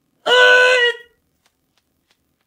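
A woman's short, high-pitched cry held at one pitch for just under a second, starting a quarter second in.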